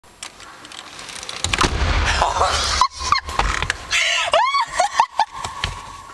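A car's rear door pulled shut from inside and slammed, one sharp bang about three seconds in, followed by high squealing voices.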